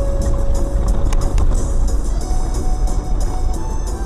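Steady low rumble of a car driving on a snow-covered road, heard from inside the cabin, with small clicks over it. Faint music plays along.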